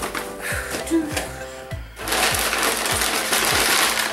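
Crumpled brown kraft packing paper rustling and crinkling loudly as it is pulled out of a cardboard box, starting about halfway through. Background music with a steady beat plays throughout.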